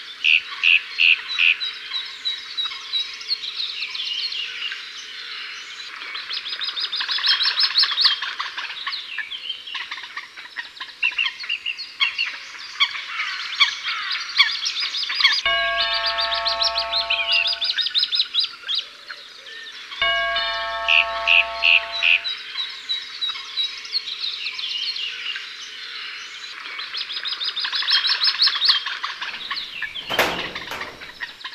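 Many small birds chirping and trilling densely throughout. About halfway through come two held chime-like tones, each lasting about two seconds, a few seconds apart.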